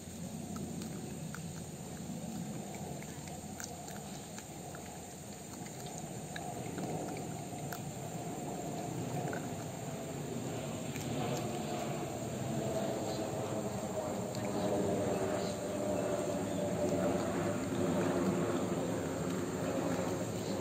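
Steady insect chirring from the grass, with a few faint ticks and a duller mid-range noise that grows louder through the second half.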